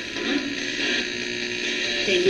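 RadioShack 12-150 radio used as a ghost box, sweeping through stations and played through a guitar amp and pedal: a steady hiss of static with brief scraps of broadcast sound.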